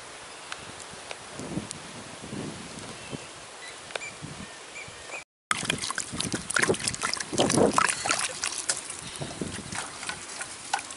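Quiet outdoor ambience, then after a sudden cut about halfway in, water poured from a jug onto agathi (hummingbird tree) leaves in a clay pot, splashing and sloshing as hands wash the leaves.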